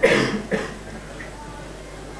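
A man coughs twice in quick succession, the first cough the louder, as if clearing his throat.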